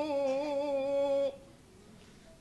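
A man's unaccompanied voice chanting an Arabic qasida, holding one long, slightly wavering note at the end of a verse line. The note breaks off after just over a second.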